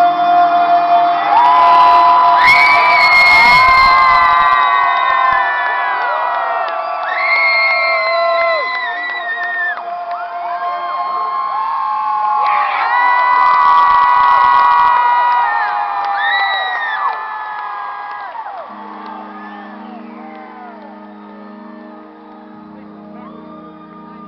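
Concert audience cheering and whooping over a held closing chord, loud at first and then dying away over the last several seconds, with only a low sustained chord left at the end.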